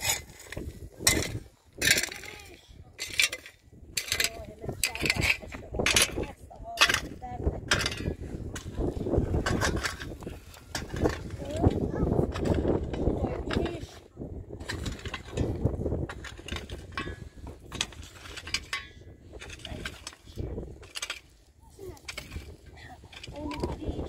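A knife cutting up a raw chicken on a metal tray, with a run of short sharp clicks and scrapes, most of them in the first half.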